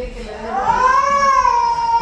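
A baby crying: one long, drawn-out wail that rises in pitch and then eases slightly down.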